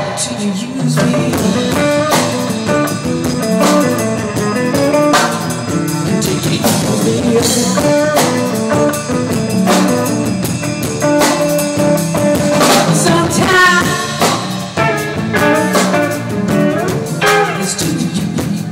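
Three-piece band playing live: electric guitar, bass guitar and drum kit together in a steady groove.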